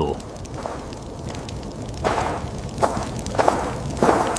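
Steady background ambience with a rushing, noisy quality, with a few short soft sounds about halfway through and near the end.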